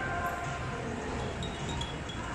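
Indoor shopping-centre ambience: an even background hum of the hall with a few faint, steady tones that come and go.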